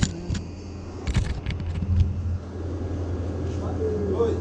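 A few knocks and scrapes as the camera is set down and adjusted on a concrete ledge, the sharpest right at the start and a cluster about a second in, over a steady low hum.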